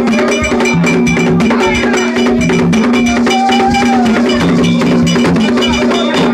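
Live gagá drumming: hand drums struck with sticks in a fast, dense rhythm with a ringing metallic beat over it, and a low held tone with a second, lower tone coming in about once a second. A voice sings or calls over it, most clearly a little past the middle.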